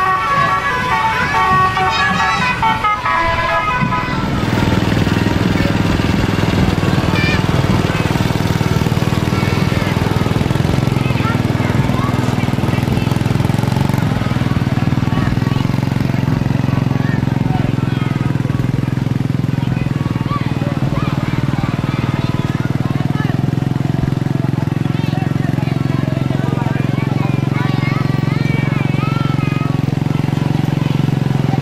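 A small engine running steadily close by, with an even drone and no change in speed, starting about four seconds in after a few seconds of tune-like tones, with voices faint in the background.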